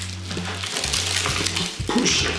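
Background music with a steady low bass line, over rustling and crumbling as soil and dry pineapple leaves shift while a small terracotta pot is worked off the plant's root ball.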